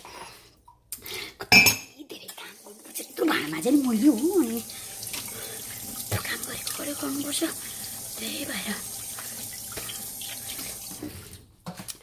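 Water running steadily, as from a tap, with a sharp knock about a second and a half in and a short stretch of voice just before the water settles into a steady hiss.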